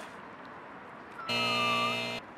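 An edited-in 'wrong answer' buzzer sound effect. It is one harsh, steady buzz just under a second long that starts abruptly about a second and a quarter in, signalling a mistake.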